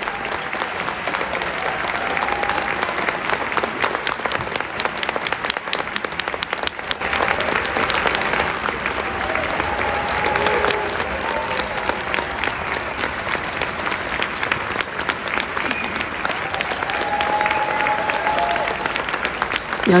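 Concert hall audience applauding steadily after a symphony performance, a dense continuous patter of many hands, with faint voices calling out now and then.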